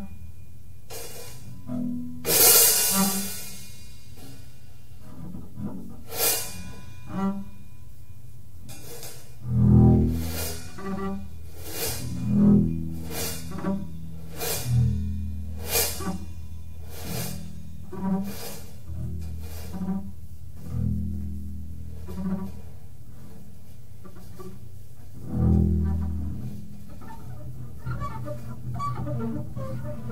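Free jazz improvisation on upright bass and drums: the bass plays long, low notes, sounding bowed, while the drummer adds sparse, irregular hits and cymbal strikes, the loudest a cymbal crash about two and a half seconds in.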